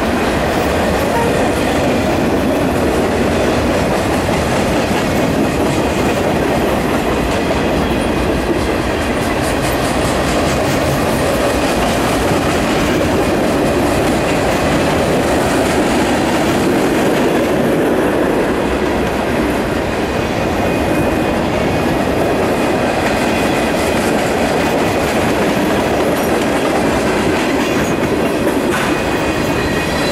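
Union Pacific manifest freight train's cars rolling past close by: a loud, steady, unbroken rumble of steel wheels on the rails.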